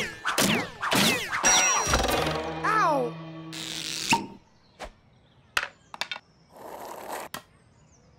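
Animated-cartoon sound effects: a quick run of sliding, swooping tones and knocks, then a held low hum that cuts off about four seconds in. Scattered clicks and a short rustle follow near the end.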